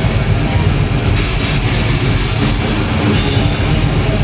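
Death metal band playing live: heavily distorted electric guitars and bass over fast, continuous drumming, recorded from the crowd.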